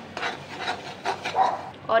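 A perforated steel spatula scraping and stirring coarse-ground moong dal through hot ghee in a steel kadhai, in quick repeated strokes, about three or four a second.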